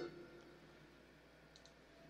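Near silence, opened by one faint click with a brief low ring after it.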